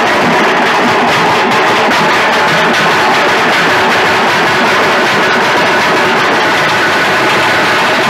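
Several halgi frame drums beaten together with sticks in loud, unbroken drumming.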